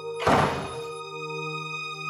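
Slow ambient background music of steady held tones, with a single sudden thud about a quarter of a second in that dies away within half a second.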